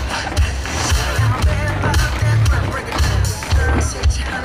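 Many tap shoes clicking on a stage floor in rapid rhythmic strikes, over loud recorded pop music with a pulsing bass beat and a singer.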